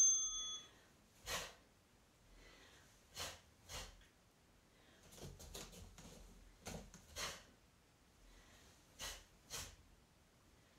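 An electronic interval-timer beep at the very start marks the round. It is followed by sharp breaths out in time with double punches, mostly in pairs about half a second apart, every two to three seconds.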